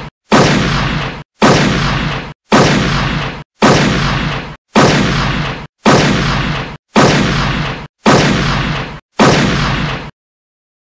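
The same gunshot sound effect repeated nine times, about once a second. Each shot starts sharply, rings on for about a second, then cuts off abruptly.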